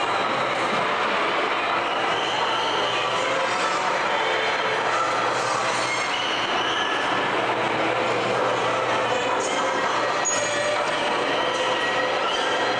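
Theme-park ride train running along its track, a steady loud noise with a few short high squeals.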